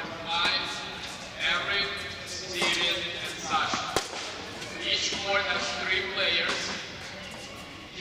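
Voices talking throughout, with the sharp crack of a tennis racket hitting the ball; the clearest hit is about four seconds in.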